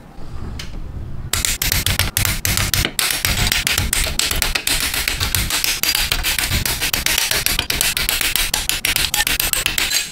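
Clear plastic model-kit runner being handled and its parts snipped off with side nippers. Low handling rumble gives way about a second in to a dense run of hard plastic clicks and crackles.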